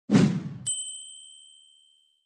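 Logo sting sound effect: a short noisy rush, then a single bright, high ding that rings out and fades away over about a second and a half.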